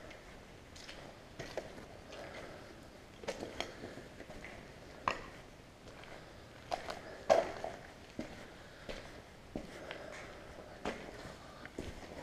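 Footsteps crunching over grit and debris on a concrete floor, irregular steps with scattered sharp crunches, the loudest about seven seconds in.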